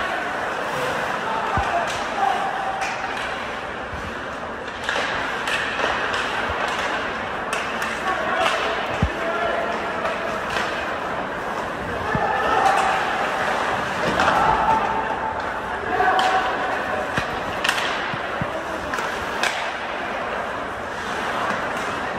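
Ice hockey game in an indoor rink: sticks and the puck clacking and knocking against the boards, with voices calling out, all echoing in the arena.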